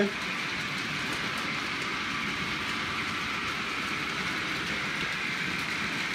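OO gauge model trains running on the layout: a steady hum and rattle of small electric motors and wheels on the track.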